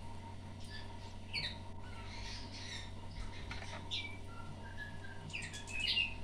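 Canary × linnet hybrid nestlings giving scattered short, high chirps, several bunched together near the end.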